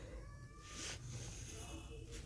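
Pencil drawn along a plastic ruler on paper, a faint scratching stroke about a second in, with faint thin tones in the background.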